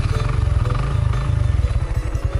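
Suzuki GN125's single-cylinder four-stroke engine running with a steady low, rapid pulsing of its exhaust beats.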